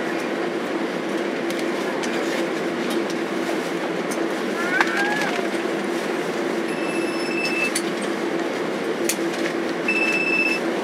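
Steady cabin noise of a Boeing 767-300 taxiing slowly to the gate with its engines at idle, a constant hum under a broad rush. A high steady beep about a second long sounds near seven seconds in.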